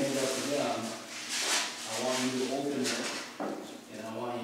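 A man speaking, with a plastic bag crinkling as it is handled, loudest about a second and a half in.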